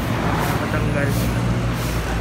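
Busy street noise: a vehicle engine running with a steady low hum, under faint chatter of people around.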